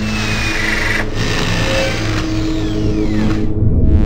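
Sound design for an animated logo intro: a steady low drone of held tones under a noisy high layer, with a few high tones sliding down in pitch about two to three seconds in.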